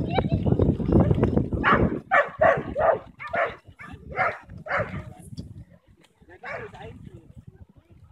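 A dog barking repeatedly, about two to three barks a second, while running an agility course, with wind rumbling on the microphone in the first couple of seconds.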